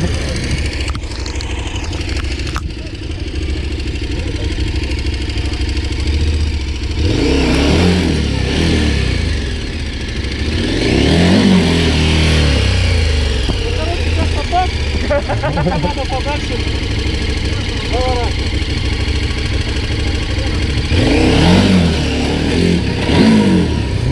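Large KTM adventure motorcycle engine revving in repeated bursts that rise and fall, spinning the rear tyre in loose dirt during a pivot turn.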